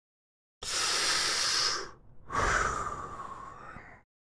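A man's deep breath drawn in close to the microphone about half a second in, then after a short pause a long, audible sigh that trails away: an exasperated reaction to a justice saying he wants to talk about Orwell.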